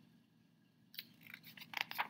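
A picture book's paper page being turned by hand: quiet for about a second, then a run of short paper crackles and rustles.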